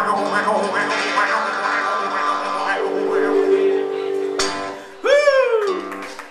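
The end of a live song: a man sings a long held note over a strummed acoustic-electric guitar. The music stops abruptly about four and a half seconds in, and a short shout with a falling pitch follows.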